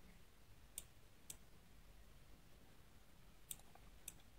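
Three faint, sharp computer mouse clicks: one about a second in, another half a second later, and one near the end, over near silence.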